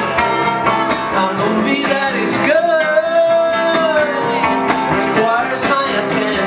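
Acoustic guitars strummed in a steady rhythm under a singing voice, which holds one long note in the middle.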